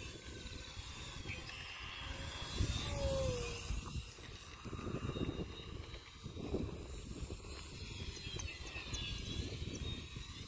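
Wind buffeting the microphone, with the faint whine of a small radio-controlled model airplane's motor and propeller rising and falling in pitch as the plane flies past.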